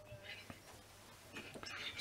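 Faint speech: a man's voice heard low in the background, with no loud sound.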